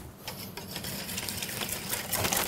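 Wire whisk stirring beaten eggs and cream in a stainless steel mixing bowl: faint, quick ticking and light scraping of the wires against the metal.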